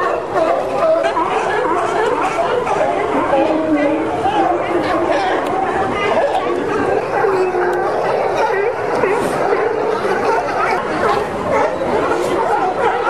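A colony of California sea lions barking, many calls overlapping in a steady chorus, with the chatter of people mixed in.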